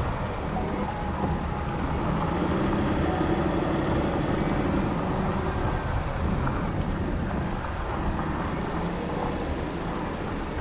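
Volkswagen Atlas with its 3.6-litre VR6 driving steadily along a dirt road, heard from a GoPro suction-mounted on the outside of the vehicle: an even rumble of engine, tyres and wind.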